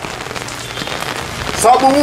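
Steady, even hiss of background noise with no words, then a man's voice begins near the end.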